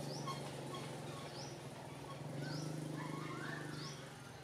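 Forest ambience: a bird repeats a short, high, rising call about once a second, with a few other chirps, over a steady low hum.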